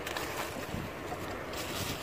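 Wind on the microphone: a steady low rumble with hiss.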